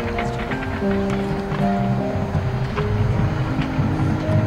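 High school marching band playing: held brass and woodwind notes moving slowly from pitch to pitch over a low bass line, with light percussion ticks on top.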